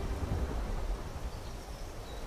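A low rumbling noise, strongest in the first second, in a break between sustained music chords.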